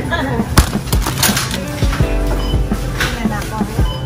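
Background music and voices, with a few sharp clicks and knocks as a glass freezer-case door is handled and swings shut.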